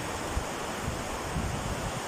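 Fast-flowing river rushing over rapids, a steady wash of water noise, with soft gusts of wind on the microphone.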